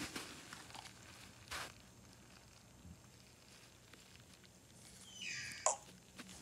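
Faint handling and rustling on a bedspread, with a short rustle about a second and a half in. Near the end a TV remote is picked up, with louder handling noise and a sharp click.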